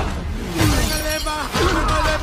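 Glass shattering in a fistfight: a sudden crash about half a second in, with a shimmering tail of breaking pieces. Men grunt and yell around it.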